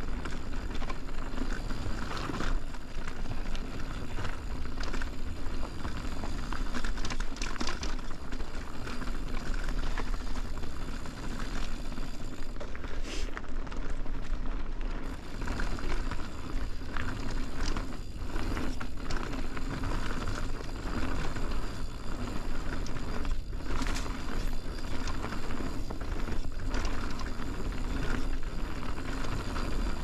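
Mountain bike rolling fast down a dirt singletrack: the tyres rush over the packed dirt and leaves under a steady low rumble, with frequent short rattles and knocks from the bike over bumps.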